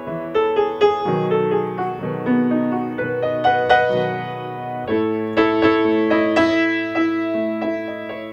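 Grand piano played solo: low chords held in the bass under a melody of struck notes, the bass moving to a new chord about a second in and again about five seconds in.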